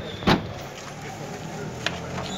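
Busy street background with traffic and faint voices, broken by a sharp knock about a third of a second in and a lighter click near the end.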